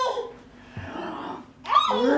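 A laugh dies away at the start. Near the end a Great Dane gives one short, loud vocal call.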